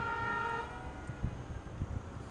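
A vehicle horn holds one long steady note that cuts off about half a second in. A faint low rumble of wind on the microphone follows.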